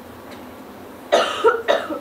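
A man coughing, a quick run of two or three coughs about halfway through.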